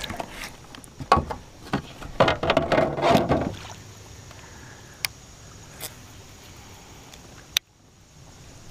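Handling noise on a plastic fishing kayak: a run of knocks and rattles over the first few seconds, then a low steady background with a few single clicks and one sharp click near the end.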